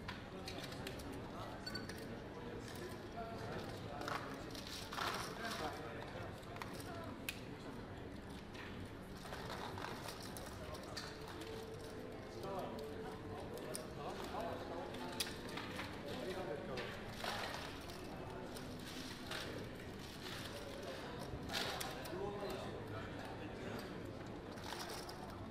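Roulette chips clicking and clattering in irregular bursts as the dealer gathers them off the layout, over a low murmur of voices around the table.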